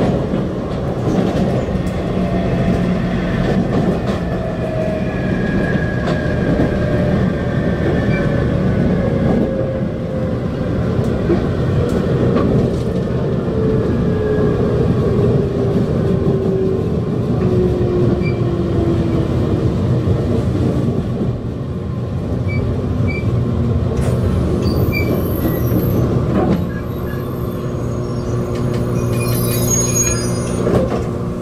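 JR Kyushu 811 series electric train heard from inside the carriage as it slows into a station: a steady rumble of wheels on rail under a motor whine that falls steadily in pitch as the train loses speed. The running noise drops a few seconds before the end as the train comes almost to a stop at the platform.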